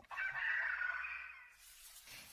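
A rooster crowing once, played as a sound effect between segments of a radio show; the crow lasts about a second and a half and fades out.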